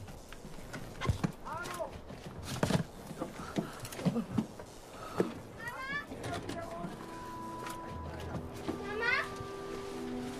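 Wordless human cries with wavering pitch, mixed with scattered knocks and clatter. About seven seconds in, steady held tones of background music come in.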